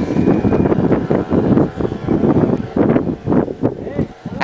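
Wind buffeting the microphone: a loud, gusty low rumble that rises and falls unevenly.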